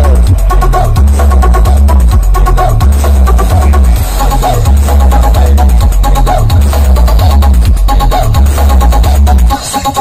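Electronic dance music with heavy, pulsing sub-bass played very loud through a giant outdoor sound-system speaker stack. The deep bass cuts out suddenly about half a second before the end.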